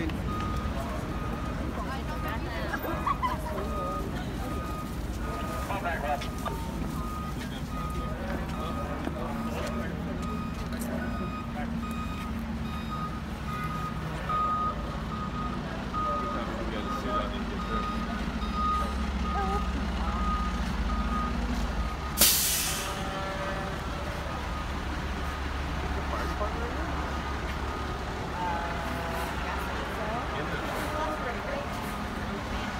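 FDNY aerial ladder truck backing up: its diesel engine runs under a steady, repeating reversing beeper. About two-thirds of the way through the beeping stops and the truck's air brakes let out one loud hiss as it comes to rest, then the engine idles on.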